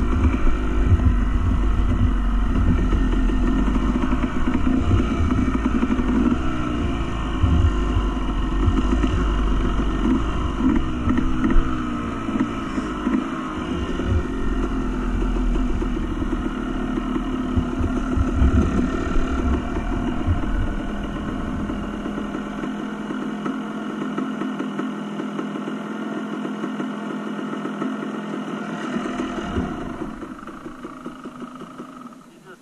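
Off-road motorcycle engine running while being ridden, the throttle rising and falling. The low rumble falls away about three-quarters of the way through, leaving a quieter engine note.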